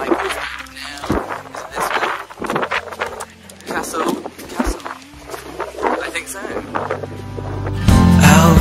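A man speaking over quiet background music; the music swells near the end.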